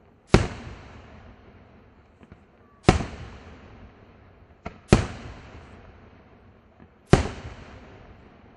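Aerial firework shells bursting: four loud booms about two seconds apart, each trailing off in a long echo, with a smaller report just before the third.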